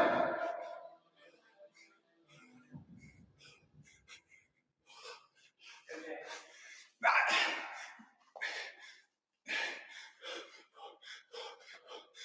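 A man breathing hard with short, sharp puffs of breath while lifting a dumbbell, faint at first and coming in quick bursts in the second half.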